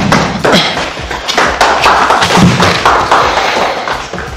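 A small audience applauding: many dense hand claps, easing off near the end.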